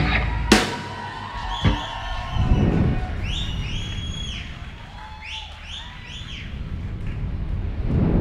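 A rock band's song ends on a last drum hit with cymbals ringing out, followed by whooshes and short high electronic tones that slide up, hold and fall, the sound of an animated logo sting between songs.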